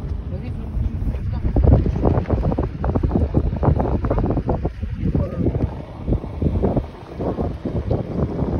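Heavy wind buffeting the phone's microphone from a moving car, a loud uneven rumble with gusty bursts.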